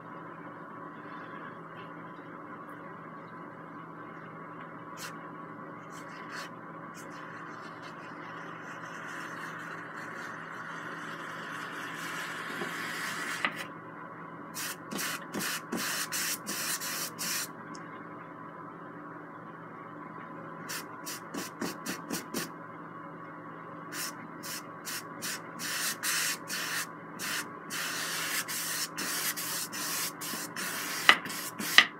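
Paintbrush dragging oil paint across a canvas: a scratchy rubbing, first one long stroke that grows louder until about halfway through and stops suddenly, then many short quick strokes over the second half. A steady faint hum runs underneath.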